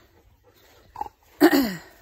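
A woman coughing once, a single harsh burst about a second and a half in, with a short faint throat sound just before it.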